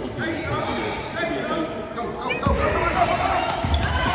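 A basketball bouncing on a hardwood gym floor, with the thuds heavier from about halfway through, over the chatter of voices in a large, echoing gym.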